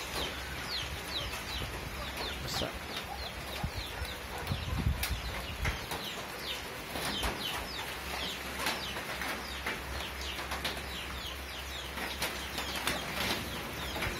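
Birds chirping throughout in many short, quick, falling notes, over a steady low rumble.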